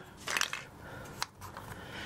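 A few light clicks and clinks of small plastic fittings being handled at an underfloor heating manifold: the decorator caps just taken off and the actuator locking collars.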